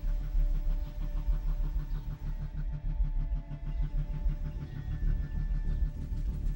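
A vehicle engine running with a steady low throb, heard from inside the cabin.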